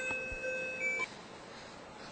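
A short electronic melody of pure beeping tones, several held notes overlapping at stepped pitches, which stops about a second in.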